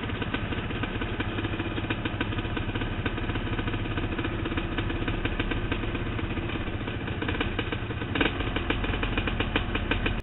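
ATV engine running steadily at low revs, heard close up from a camera mounted on the quad, with a brief louder burst about eight seconds in.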